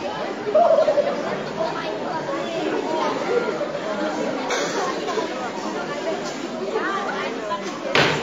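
Many voices chattering at once, a steady hubbub of talk with no singing yet, and a sharp click at the very end.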